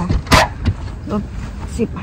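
A woman's voice speaking briefly over a low rumble, with two or three short, sharp noises in the first half-second.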